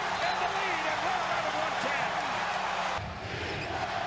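NBA broadcast audio: an arena crowd cheering a go-ahead basket, with voices rising and falling through it. About three seconds in it cuts to a basketball being dribbled on a hardwood court.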